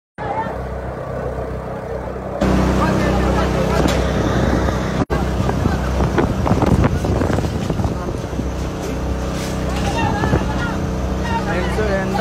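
A motor engine running steadily close by, with people's voices and calls over it; the sound gets louder about two and a half seconds in and drops out for an instant about five seconds in.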